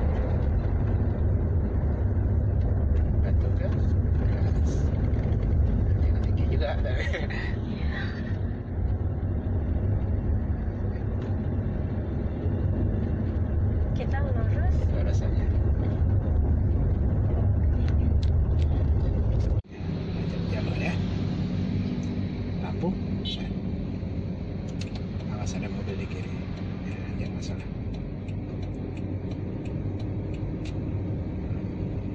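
Steady low rumble of an automatic car being driven, heard from inside the cabin. About two-thirds of the way through the sound cuts off abruptly and returns with a lighter rumble.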